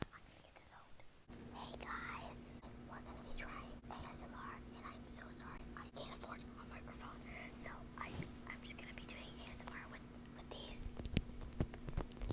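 A girl whispering close to the microphone, ASMR-style, over a steady low hum. There are a few sharp clicks near the end.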